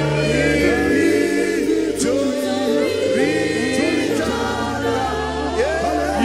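Live gospel worship music: men singing into microphones in unison and harmony, backed by a band with steady bass notes.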